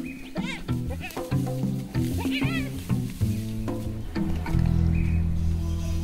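Spotted hyenas making short, high, wavering calls while squabbling over a carcass: a burst near the start and another about two seconds in. Underneath, documentary music holds low notes that swell in the second half.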